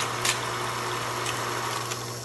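Old-film sound effect under a film-strip logo: steady hiss and a low hum, with a few scattered crackling clicks.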